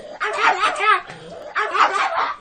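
Pug barking excitedly in rapid high yaps, each rising and falling in pitch, in two quick bursts.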